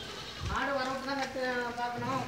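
Goat bleating: one long, wavering bleat that starts about half a second in.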